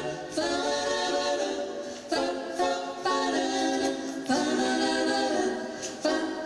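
A small mixed group of men's and women's voices singing in close harmony, holding chords that change every second or two.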